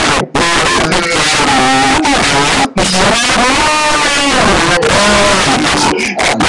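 A homemade recording of voices pitched down to sound deep, played back loud through a computer speaker, the pitch sliding up and down as it goes.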